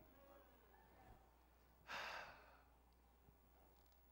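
Near silence, broken about two seconds in by a single short, breathy exhale of about half a second.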